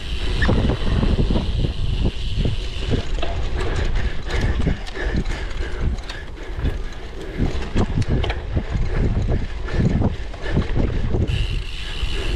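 Cyclocross bike rattling and clicking as it rolls over bumpy grass: irregular knocks from the frame and drivetrain at each bump over a steady low rumble.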